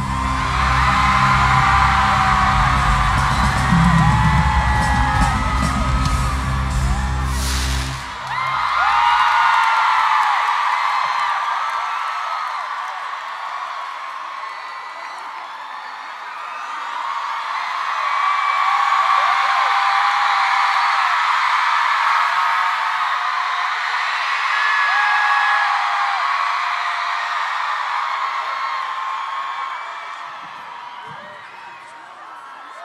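Loud live band music with drums and heavy bass, with an arena crowd screaming over it; the music cuts off abruptly about 8 seconds in. The crowd's high-pitched screaming carries on alone, dips, and swells again in the second half.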